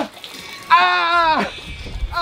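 A man's loud, drawn-out yell, about a second long and dropping in pitch at its end: a cry of shock at the ice-cold water of a chest-freezer cold plunge.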